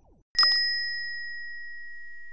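A single bright bell ding, the notification-bell sound effect of a subscribe animation. It strikes about a third of a second in with a quick click and rings on with a clear high tone that fades slowly.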